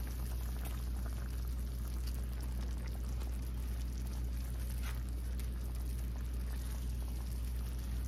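Coconut milk bubbling at the boil in an aluminium wok, stirred now and then with a wooden spatula, over a steady low hum.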